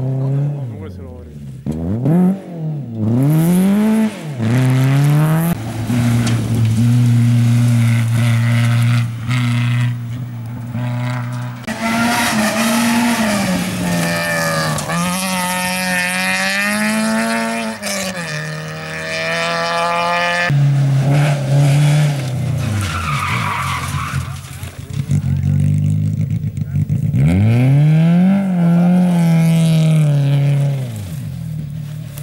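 Rally car engines revving hard through a loose dirt corner, the pitch climbing and dropping sharply again and again with gear changes and lifts off the throttle, as several cars pass in turn.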